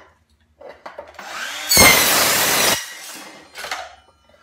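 Hilti SCM 22A cordless cold-cut circular saw spinning up and cutting through a steel C stud in about one second, a loud rasping cut with a high metallic whine, then winding down as the blade stops.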